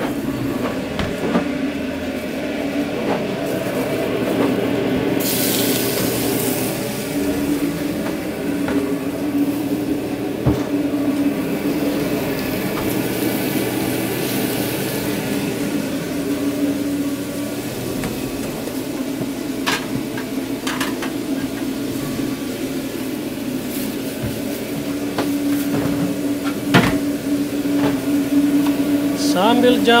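Food truck kitchen at work: a steady drone from the ventilation and cooking equipment, with two longer bursts of high hissing, like food going onto a hot flat-top griddle, and a few sharp clanks of metal utensils.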